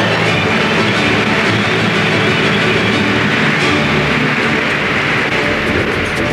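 Large arena crowd cheering in a steady roar over background music.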